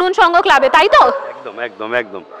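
Speech: a woman talking in a high, lively voice, then a man's lower voice starting to answer about a second and a half in.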